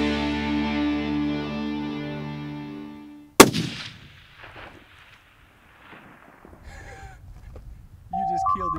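A single loud rifle shot about three and a half seconds in, its report echoing for about a second before dying away, as fading background music ends.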